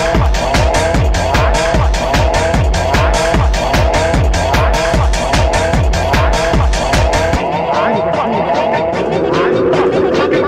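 Fast techno DJ mix with a steady four-on-the-floor kick drum, ticking hi-hats and a gritty, squealing riff repeating in the middle register. About seven seconds in, the kick and deep bass drop out, leaving the riff and hi-hats.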